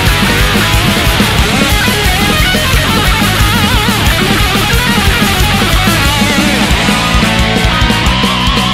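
Instrumental passage of a Japanese thrash/progressive metal song: distorted electric guitars and fast drums, with no vocals. A high melodic lead line with a wavering pitch runs through the middle.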